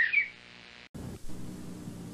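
The end of a single-pitched whistle blast, with a short extra toot, in the first moment. It is followed by a faint steady hiss that cuts out completely for an instant about a second in.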